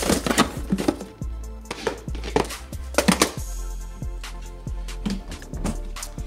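Plastic cases and boxes knocking and rattling against each other as they are shifted around in a desk drawer, in clusters of sharp clatters near the start and again around two to three seconds in.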